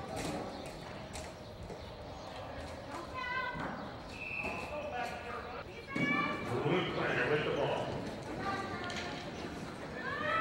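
Hoofbeats of several polo ponies galloping on the arena's dirt footing, with voices calling out a few times in short bursts.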